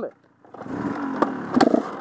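Enduro dirt bike engine running under throttle on a rough gravel climb. After a brief near-silent gap just after the start, the engine sound comes back and builds, with a couple of sharp knocks from the stony trail.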